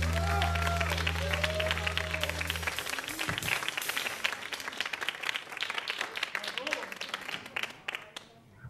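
The band's last chord, a low held bass note from the amplifiers, rings for the first few seconds and stops abruptly, while a studio audience applauds, with a few shouts at the start. The applause carries on after the chord and fades out near the end.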